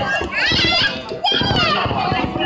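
Children's voices near the microphone, talking and calling out in high, excited voices, with one outburst about half a second in and another just past a second in.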